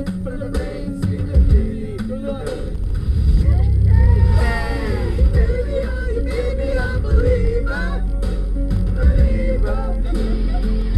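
Karaoke music playing loudly with a heavy bass inside a party van, with passengers' voices singing along, stronger from about three and a half seconds in.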